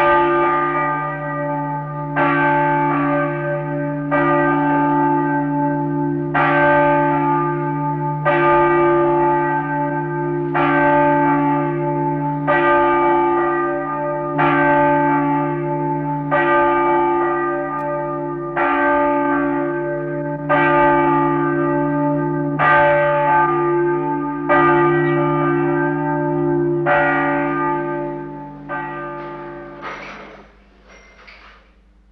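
A large bell tolling slowly, about one strike every two seconds, each strike ringing on into the next.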